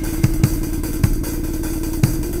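Intro music over a title card: a steady, buzzing low drone with a few bass-drum thumps at uneven intervals.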